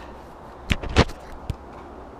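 Three short, sharp knocks within about a second, the second one loudest, over a faint outdoor background.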